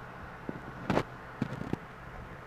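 A few short knocks and scrapes of handling noise from the phone being moved against the plastic tank, the loudest about a second in and a quick cluster of three or four soon after, over a steady low hum.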